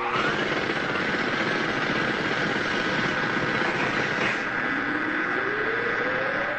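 Logo intro sound effect: a dense, steady rushing noise with a held high tone. A rising pitch sweep runs in at the start, and another slow rising sweep comes in about four and a half seconds in.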